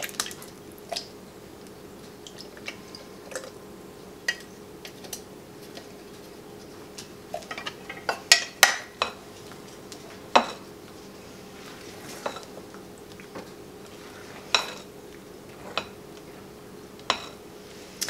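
Scattered clinks, knocks and scrapes of a utensil against a tin can and a glass mixing bowl as canned pineapple chunks are spooned into a wet batter and stirred in, with a cluster of louder knocks about eight seconds in.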